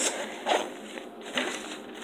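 Rustling and scratching as a blood glucose meter kit is handled in its black soft carrying case and items are taken out, with short scuffs about half a second and a second and a half in.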